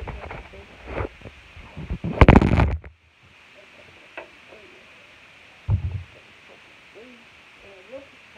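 Handling noise from a phone held close to its own microphone: a few knocks, then a loud rubbing and scraping about two seconds in that stops abruptly, and a dull thump near six seconds. Faint voices carry on underneath.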